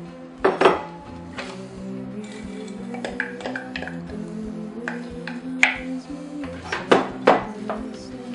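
Background music with sustained notes over kitchen clatter: a wooden spoon and a bowl knocking against the rim of an enamelled cast-iron pot as chopped vegetables are tipped in and stirred. Two sharp knocks come about half a second in, and a cluster of knocks near the end.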